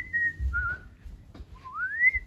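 A person whistling a few notes: a high held note, a lower wavering one, then a slide up to the high note again near the end. Low thumps of the phone being handled run underneath.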